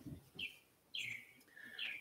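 A small bird chirping faintly, three short high chirps spread over two seconds.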